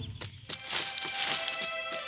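Cartoon background music: held tones over a light, evenly ticking beat, with a brief swell of hiss-like sound rising about half a second in.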